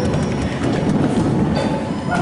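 Many bare feet running across a wooden floor, a dense continuous rumble of footfalls.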